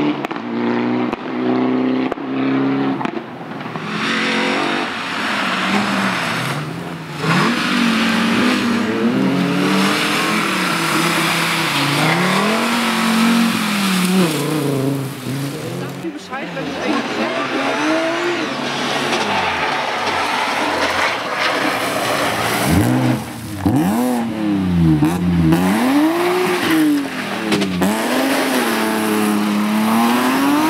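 Rally car engine, a BMW E36 3 Series saloon, revving hard on a loose gravel stage, its pitch rising and falling with gear changes and throttle lifts over the crunch of tyres on gravel. Near the end the revs swing up and down every second or so as the car is worked through a hairpin.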